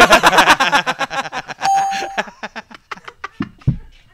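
Several men laughing hard together in quick, pulsing bursts that thin out and fade after about three seconds. A short steady beep-like tone sounds for about half a second a little past the middle.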